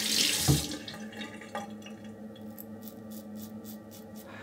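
Water running from a bathroom sink tap, turned off within the first second, followed by quieter handling sounds and a faint quick series of ticks near the end.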